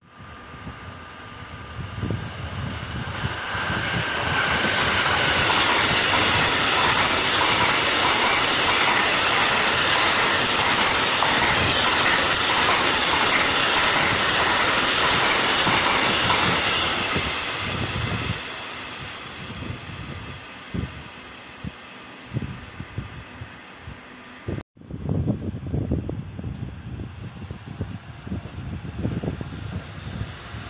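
Freight train of grain hopper wagons passing close at speed: the noise of wheels on rail builds over the first few seconds, holds steady with clickety-clack, then dies away. After an abrupt cut near the end, a quieter, uneven rumble with scattered knocks from another rail vehicle approaching.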